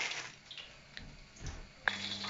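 Faint wet squelches of chicken strips being worked through thick batter by hand, a few soft ones about half a second apart, then a sharp click near the end.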